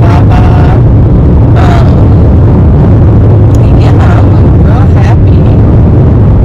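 Car cabin noise while driving: a loud, steady low rumble of the engine and road, with a few brief snatches of a voice over it.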